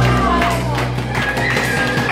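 Live band music at the end of a song: a held low chord stops about half a second in, and looser playing with sharp strikes follows.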